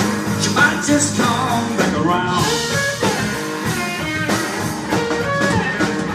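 Live blues-rock band playing: electric guitar lines over bass guitar and a drum kit, a steady groove with no break.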